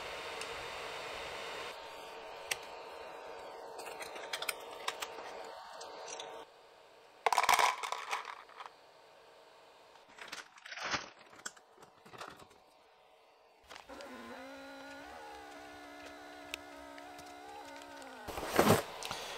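Plastic vacuum storage bag crinkling and rustling as a filament spool is handled into it, with scattered clicks. From about two-thirds of the way in, a small handheld electric vacuum pump's motor hums steadily, pumping the air out of the bag.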